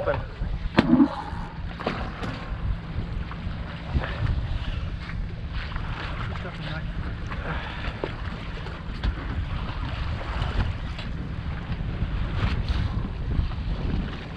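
Steady wind rumble on the microphone, with water washing against the hull of a boat at anchor on open sea, and a few faint clicks.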